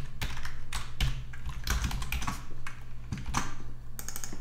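Typing on a computer keyboard: an irregular run of keystroke clicks, several a second.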